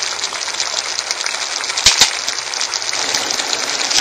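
Tomato and octopus sauce sizzling in a pan, a steady fine crackle, with two sharp clicks about two seconds in.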